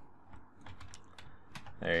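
Computer keyboard keys clicking: several light, irregular taps while shortcuts are pressed to work in 3D software.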